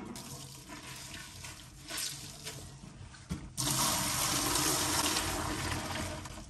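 Water splashing into a stainless steel kitchen sink as a plastic washing-up bowl is emptied, starting suddenly about three and a half seconds in and running steadily. Before that, quieter dripping and handling as a cloth is wrung out over the bowl.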